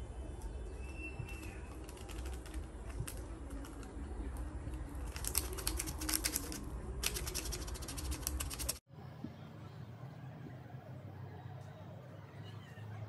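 Crinkling and crackling of a small plastic sachet of pH buffer powder being shaken out over a bowl of water, in two bursts of rapid crackle in the middle, over a low steady rumble. The sound drops suddenly near the end.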